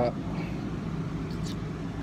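Steady low hum of a car's air conditioning running inside the cabin.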